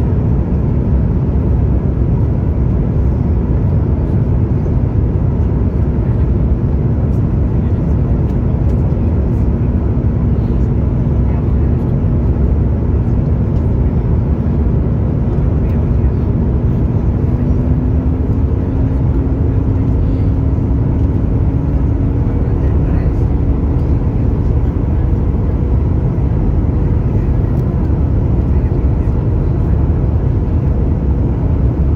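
Steady cabin noise of a Boeing 737 MAX 9 descending, heard from a window seat over the wing: a loud, even rumble of airflow and its CFM LEAP-1B engines. A faint hum in it rises slightly in pitch past the middle.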